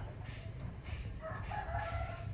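A rooster crowing: one long drawn-out call that begins just over a second in, over a steady low background rumble.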